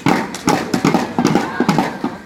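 Rope-tensioned two-headed drum beaten with a wooden stick on its skin head: a quick, uneven run of strikes, about four a second.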